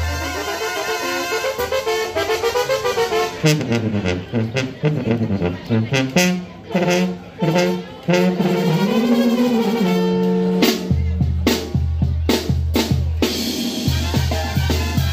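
Live Mexican banda brass band playing: trombones and trumpets carry the melody over light percussion with the deep bass dropped out, then the sousaphone and bass drum come back in with the full band about eleven seconds in.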